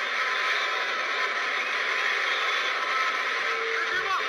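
Steady, even background noise with no speech in it, strongest in the middle and upper range and without pitch or rhythm.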